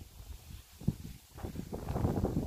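Wind buffeting a handheld microphone, a low rumble that grows louder near the end, with one soft bump about a second in.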